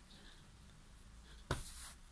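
Faint scratching of fingers in hair, then a short sudden rush of noise about one and a half seconds in.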